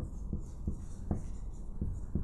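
Marker pen writing on a whiteboard: a run of short strokes as a word is written letter by letter.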